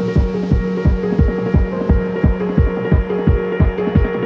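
Drum and bass music: a rapid, even run of deep kick hits that drop in pitch, about four a second, under sustained synth tones.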